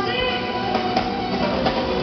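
Live band music: a guitar played over a drum kit, continuous and steady in level.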